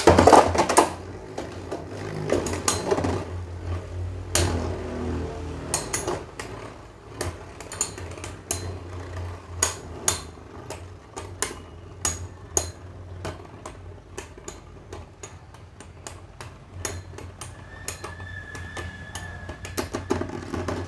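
Two Beyblade Metal Fusion tops, Meteo L-Drago and Galaxy Pegasus, spinning in a plastic stadium. A loud launch burst comes at the start, then a steady whirr runs on with many sharp clacks as the tops' metal wheels collide.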